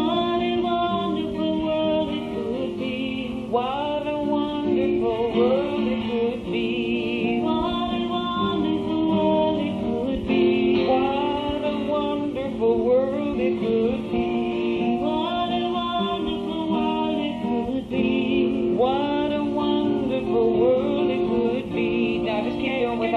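Acoustic guitar strummed steadily under a voice singing a wordless melody that rises and falls, on a muffled, low-fidelity recording.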